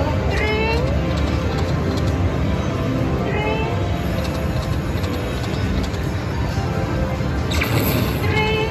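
Konami video slot machine spinning its reels three times, each spin starting with a short burst of gliding electronic tones, over steady casino din and background music.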